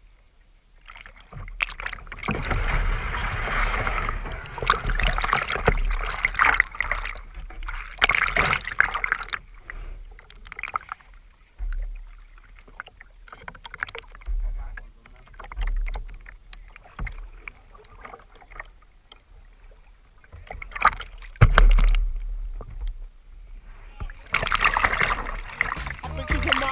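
Water splashing and sloshing against the bow of a plastic kayak under paddle strokes, in irregular bursts: busy for the first ten seconds, sparse in the middle, and busy again near the end. A single heavy knock comes about twenty-one seconds in.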